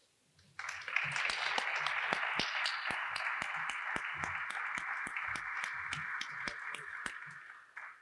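Audience applauding, starting about half a second in and cutting off abruptly near the end.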